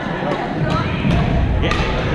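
Badminton rackets striking shuttlecocks, a few sharp pops from the courts, the last one about three-quarters of the way through being the loudest, over the steady chatter of many players in a large echoing gym.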